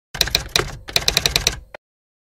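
Typewriter keystroke sound effect: a run of quick clacks, a short break, then a second, faster run and one last click, cutting off abruptly just before two seconds in.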